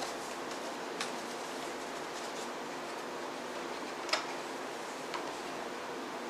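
A few light clicks and faint rustles of a CD case and its booklet being handled, the loudest click about four seconds in, over steady room hiss.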